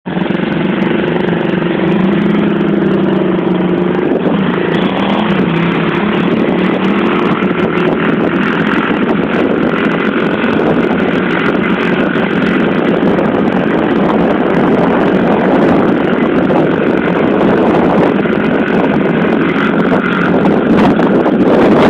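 Small single-cylinder four-stroke pit bike engine running as the bike is ridden around. A clear, steady engine note for the first few seconds, then mostly buried in a loud rushing noise.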